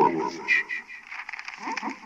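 A person's voice without clear words, fading out shortly after the start, followed by faint scattered sounds.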